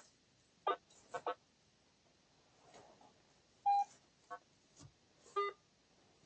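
Metal detector sounding a series of short electronic beeps of varying pitch: a few brief blips, a higher steady tone about midway, and a lower tone near the end as it passes over buried targets.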